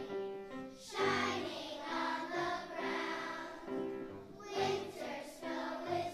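Choir of second-grade children singing a song together in sustained, held notes, with short breaks between phrases.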